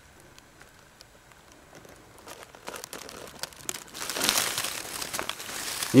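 Dry leaf litter and twigs rustling and crackling as someone shifts position in them. It is faint at first and begins about two seconds in, growing denser and louder toward the end.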